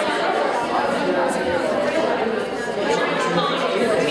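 Many people talking at once in a large hall: overlapping chatter with no single voice standing out.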